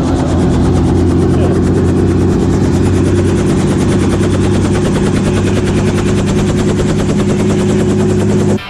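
Light helicopter running close by: a loud, steady engine drone with a fast, even beating of the rotor blades.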